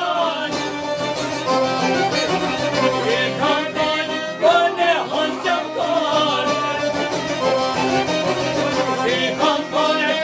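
Live Albanian folk music: men singing together in a strong, continuous vocal line, accompanied by strummed long-necked lutes, a bowed violin and an accordion.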